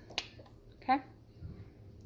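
A single sharp click just after the start, followed about a second in by a woman saying "Okay?".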